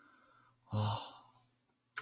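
A man's short breathy sigh about a second in. A single sharp click follows near the end.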